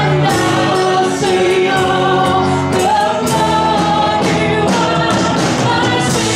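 Live worship song: several voices singing over a band of keyboard, guitar and drum kit, with a steady drum beat.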